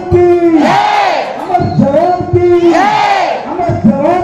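A group of NCC cadets chanting loudly together, the same rising-and-falling phrase repeating about every two and a half seconds.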